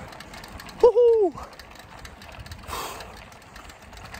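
A cyclist's short groan of effort, falling in pitch, about a second in, while climbing a steep hill, over the low steady noise of the ride.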